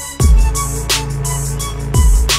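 Aggressive trap-style hip hop instrumental beat: 808 bass hits that slide down in pitch, sharp snare strikes about a second apart, and held melodic chords underneath. The beat drops out briefly at the very start, and the 808 comes back in about a fifth of a second in.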